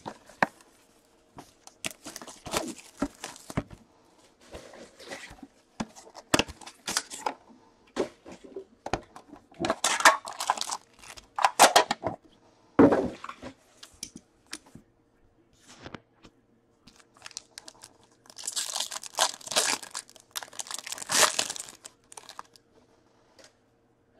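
Plastic shrink-wrap being torn and crinkled off a hockey card box, with scattered clicks and knocks as the cardboard box and the metal card tin inside are handled and opened. The loudest crinkling comes in bursts about ten seconds in and again near the end.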